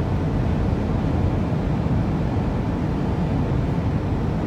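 Steady low road noise of a car cruising at highway speed, heard from inside the cabin: tyre and engine rumble with no changes.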